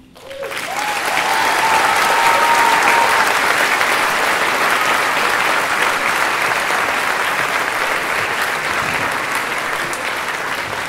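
Audience applause in an auditorium, starting as the music stops and swelling within about a second to a steady, loud clapping.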